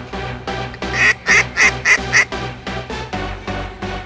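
A duck call blown in five quick, loud quacks about a second in, over electronic background music with a steady beat.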